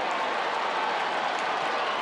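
Ballpark crowd cheering a leaping catch at the outfield wall, a steady, even wash of many voices.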